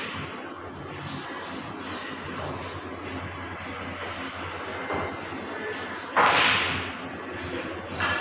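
Pool hall room sound over a steady low hum. A faint click comes about five seconds in, then a sharp, loud knock about six seconds in that rings on briefly.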